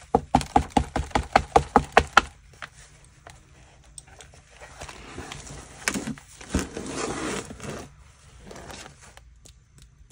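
A quick run of about a dozen sharp taps, about six a second, then several seconds of paper rustling and handling with a couple of clicks as a book's pages are moved.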